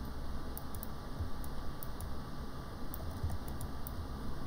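Scattered light clicks of a computer mouse and keyboard, more of them in the second half, over a low steady room hum.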